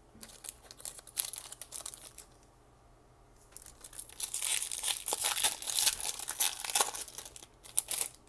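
Foil wrapper of a Pokémon Fusion Strike booster pack crinkling in short bursts as it is handled, then torn open and crinkling steadily for a few seconds as the wrapper is pulled apart from around the cards.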